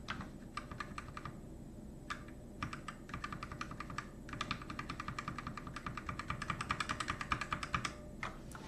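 Typing on a computer keyboard: a few scattered keystrokes and short bursts, then a fast, evenly spaced run of keypresses through the second half.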